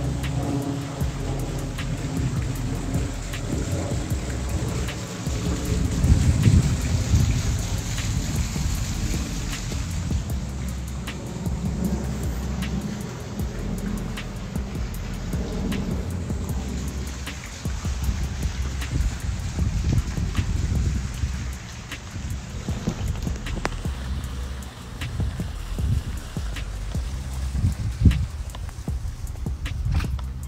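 Wind buffeting a phone's microphone outdoors: a continuous, uneven low rumble that swells and dips, loudest about six seconds in.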